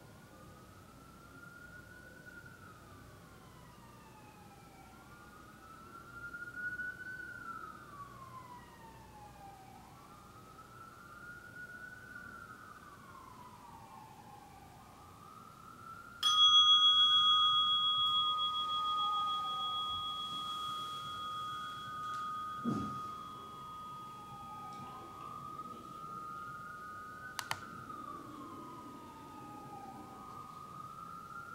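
Faint emergency-vehicle siren wailing, falling and rising every couple of seconds. About halfway through, a meditation bell is struck once and rings out with a long, slowly fading tone, marking the end of the sitting.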